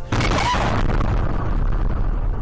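Blast of a large gas explosion picked up by a car dashcam: a sudden boom, then a heavy, continuous rumble. The explosion is suspected to come from a gas leak in a restaurant.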